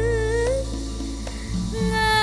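A song playing: a melody note held with vibrato ends about half a second in over a steady low accompaniment, and a new held melody note begins near the end.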